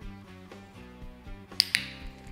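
Soft background music, then near the end a dog-training clicker gives a quick double click (press and release). It marks the puppy stepping up onto its place platform.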